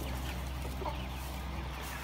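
Young hens clucking faintly and sparsely, a few short soft calls, over a steady low hum.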